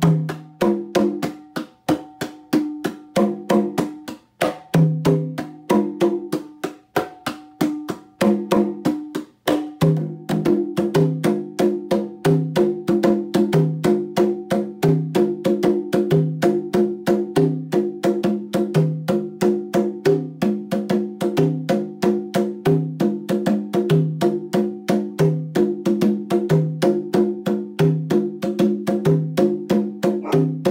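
A pair of wooden congas played with bare hands in a fast, rhythmic pattern of open tones and sharp slaps. For the first ten seconds or so the phrases are broken by short pauses, then it settles into an even, repeating groove with a deeper drum note coming back about every second and a third.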